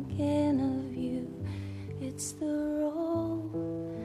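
A slow, gentle song with guitar and a held melody line that moves in small steps; a music track, not a live sound.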